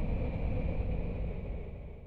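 Low, rumbling ambient background bed with a faint hiss and a thin high tone, fading out steadily.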